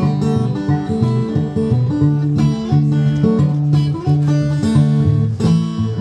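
Fingerpicked steel-string acoustic guitar playing a country blues, with a steady repeating bass line under picked melody notes.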